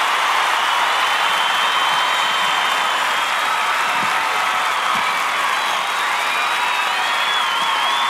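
An audience applauding and cheering steadily, with a few faint high whistles over the clapping.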